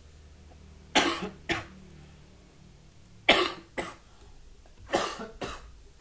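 A man coughing: three fits of two quick coughs each, about two seconds apart.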